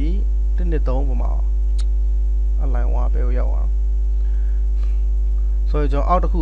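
Loud, steady low electrical mains hum on the recording, with a few short stretches of a man's speech over it.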